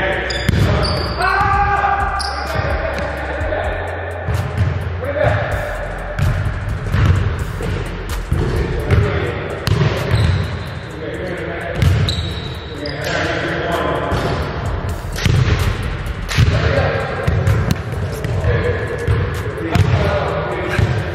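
Basketballs bouncing on a hardwood gym floor: repeated thuds, echoing in the large gym hall, with voices in the background.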